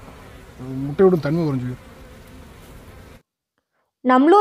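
A swarm of honey bees buzzing steadily around a broken-open nest. A short burst of a man's voice comes about a second in, and the sound cuts off abruptly near the end.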